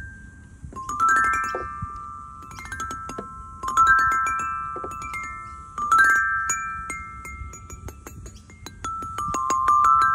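Playground tube chimes, a row of metal tubes struck with a mallet: four quick sweeps across the tubes, mostly running up the scale, with each note ringing on.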